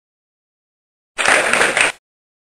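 Audience applauding, cutting in abruptly about a second in.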